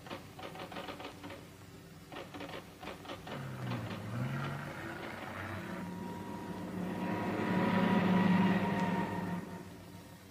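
Typewriter keys clattering in quick irregular strokes. About three and a half seconds in, a motor hum with steady pitched tones takes over, growing louder until about nine seconds in and then fading away.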